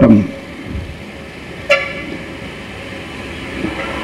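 A single short vehicle horn toot about a second and a half in, over steady background noise.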